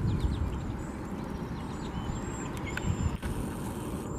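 Steady low rumble, with faint chirps and short high calls of small birds over it now and then.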